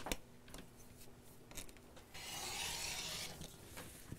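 A rotary cutter slicing through cotton fabric along an acrylic quilting ruler on a cutting mat: one rasping stroke, just over a second long, about two seconds in. Light clicks and taps of the ruler on the mat come before and after it.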